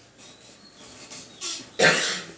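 A man coughing: a short cough about one and a half seconds in, then a louder one near the end.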